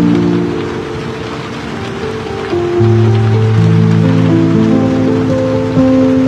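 Slow, sustained piano chords over a steady hiss of rain. A louder low chord comes in about three seconds in.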